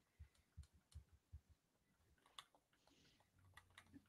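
Near silence with five faint clicks of a computer mouse: four spaced roughly a third of a second apart in the first second and a half, and one more about two and a half seconds in.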